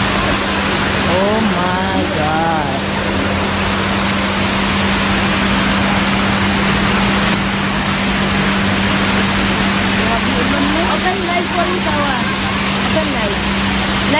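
Heavy rain pouring steadily, a loud, dense hiss, over a steady low hum. People's voices call out briefly about a second in and again around ten seconds in.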